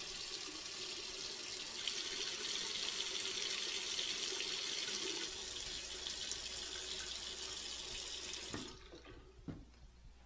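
A tap running into a bathroom sink, a steady rush of water that grows louder and brighter about two seconds in and is shut off suddenly near the end. A few faint knocks follow.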